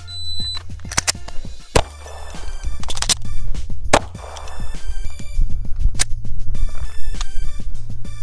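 A shot-timer app beeps once, then a 9mm pistol drawn from the holster fires two shots about two seconds apart, each a loud sharp crack. Background music plays underneath.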